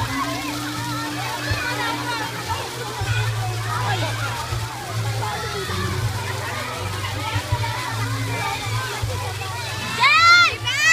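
Swimming-pool water sloshing and splashing as people swim, under a babble of overlapping voices, with music playing a steady bass line.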